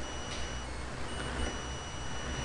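Steady background hum and hiss of the recording, with a faint high-pitched electrical whine of thin steady tones.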